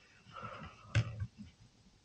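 Faint handling sounds of a shotgun receiver and its trigger-group pins: a soft rustle, then one light click about a second in followed by a couple of smaller ticks, as the pins are worked out by hand.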